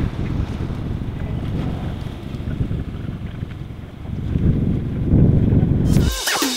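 Wind buffeting a camera microphone outdoors: a loud, uneven low rumble that dips in the middle and swells again near the end.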